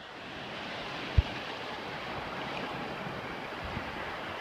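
Steady wash of sea surf in shallow water, with a single dull low thump about a second in.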